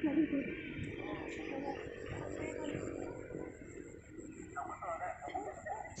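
Indistinct voices of people talking some distance away, over a steady low background noise.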